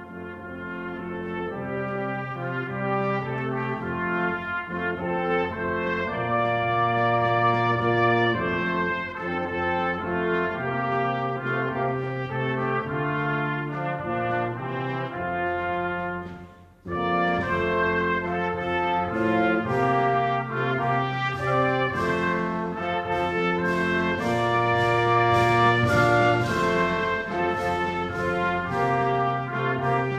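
Military brass band of tuba, trombones and trumpets playing, with sustained bass notes under the melody. The music fades in at the start, breaks off for a moment about 17 seconds in, then carries on.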